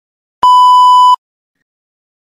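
A single loud electronic beep, one steady tone under a second long that starts about half a second in and cuts off sharply: the cue signalling the learner to begin their interpretation.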